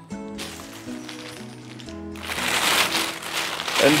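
Plastic bag rustling and crinkling as hands rummage through a plastic liner bag and frozen vacuum packs, loudest in the second half, over steady background music.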